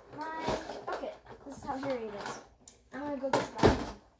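Girls talking, with a knock about half a second in and a louder clatter near the end as toys and plastic buckets are handled.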